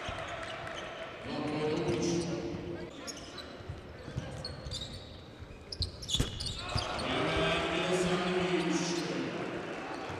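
Basketball bouncing on a hardwood court in an arena, with sharp knocks from dribbles and passes and a burst of impacts about six seconds in. Voices from the stands are held in two long chant-like calls, near the start and again near the end.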